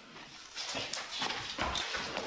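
A scuffle: shuffling footsteps and knocks as one man grabs and shoves another, with a dull thump near the end.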